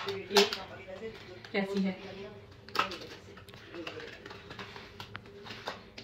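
A small cardboard product box is opened by hand, giving scattered crinkles, tears and clicks of paper packaging, with soft voices underneath.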